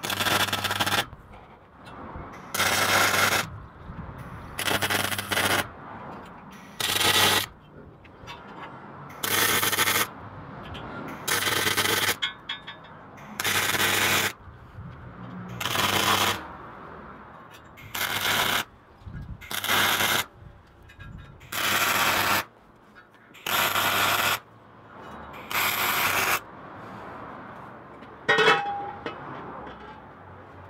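MIG welder arc crackling in short bursts as rebar is stitch-welded onto a box-section steel stove: about a dozen welds of roughly a second each, one every two seconds or so. A brief sharper sound comes near the end.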